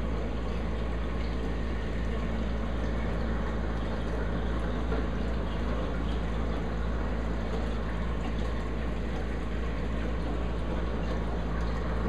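Steady rush of moving water with a low, constant hum under it: a running reef aquarium's water circulation and pumps.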